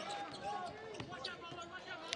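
Basketball arena sound during play: a low crowd murmur and faint distant voices, with a basketball being dribbled on the hardwood court.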